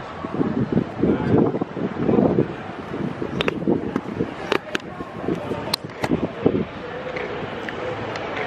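A person's voice, not clearly made out, over wind noise on the microphone, with a few sharp clicks in the middle of the stretch.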